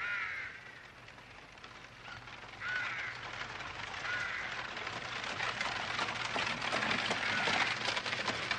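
Crows cawing: single calls at the start, about three seconds in and about four seconds in, then busier calling near the end.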